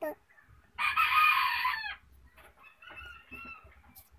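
A rooster crowing once, a loud call about a second long starting about a second in, followed by fainter, higher calls near the end.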